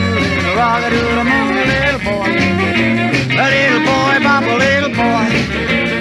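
Instrumental break of an early-1960s rock and roll record. A lead instrument plays bending, sliding phrases over a stepping bass line and steady drums.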